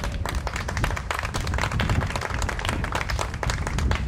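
A small group of people applauding: many hands clapping irregularly, with no pause.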